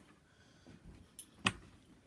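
Quiet room with faint handling noises and one sharp, short click about one and a half seconds in.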